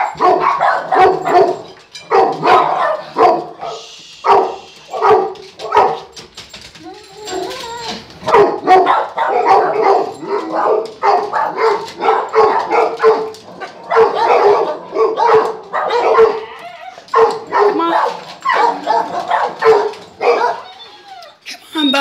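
A dog barking over and over in a long run of short pitched calls, with a brief pause about four seconds in.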